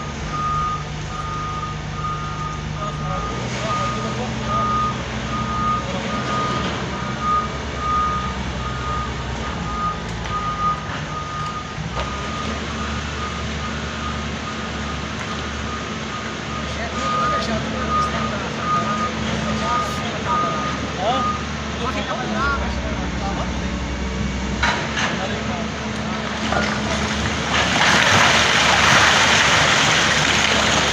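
Doosan wheeled excavator's diesel engine running, its engine note shifting, with the travel alarm beeping at a steady repeating rate as the machine drives; the beeping stops about two-thirds of the way through. Near the end comes a louder rush of noise as the bucket works into the shale face and rock comes down in a cloud of dust.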